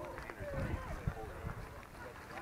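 Background chatter of several people talking, no words clear, with a low rumble beneath.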